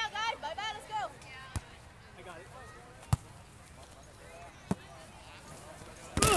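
A volleyball being struck by hand three times, sharp slaps about a second and a half apart, the middle one the loudest.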